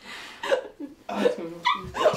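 Women's voices giving a few short, high-pitched squeals and yelps amid laughter.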